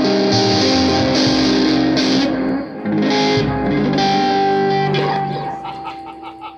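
Electric guitar played through an amplifier: a few loud ringing chords and notes, with a short break a little under halfway through, dying away near the end.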